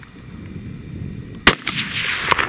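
A single sharp rifle shot about a second and a half in, a hunting rifle fired at a running bighorn ram.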